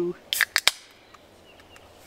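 Aluminium beer can cracked open: a quick run of sharp clicks and a pop from the pull tab, followed by a short fizzing hiss that fades within about half a second.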